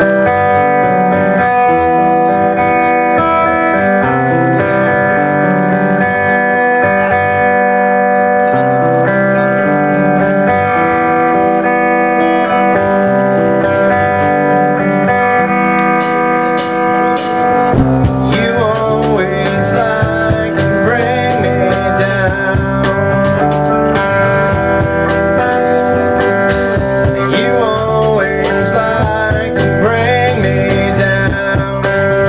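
Live blues-rock band playing an instrumental opening: electric guitar starts out with sustained, ringing notes, and about eighteen seconds in the drums and the rest of the band come in.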